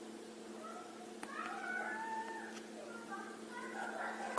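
Faint, drawn-out wavering calls, starting about half a second in and lasting several seconds, over a steady low hum.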